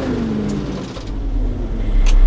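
Diesel engine of a Shantui SR12-5 vibratory road roller running steadily, with a deep low rumble that grows stronger about a second in.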